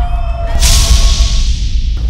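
A sharp hissing sound-effect hit, like a whip crack or swoosh, about half a second in, fading away over about a second. It plays over electronic music with a heavy bass.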